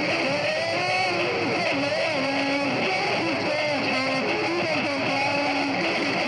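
Live music heard through a steady background din: a melody of held notes and short gliding phrases.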